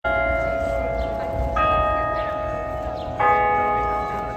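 Bronze bell atop the Delacorte Clock striking the hour: three strikes about a second and a half apart, each left ringing with several tones that overlap the next.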